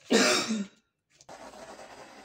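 A single short cough, the loudest sound, right at the start. About halfway through, a steady scratchy rubbing begins as a paint tool is worked across the canvas.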